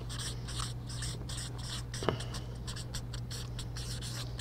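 Felt-tip marker writing a word on paper flip-chart sheets, a run of short quick strokes with a sharp tap about halfway through, over a steady low hum.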